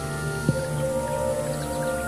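Slow ambient new-age music of long held tones layered over one another, with a new note coming in about half a second in.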